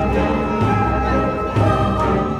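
Background music with long held notes and choir-like voices over a heavy low bass.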